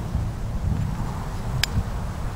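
A single sharp click about one and a half seconds in: a steel fire striker struck against flint, the one strike that throws a spark onto the char cloth.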